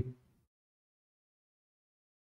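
The end of a man's spoken word trailing off in the first instant, then complete silence with no background sound at all.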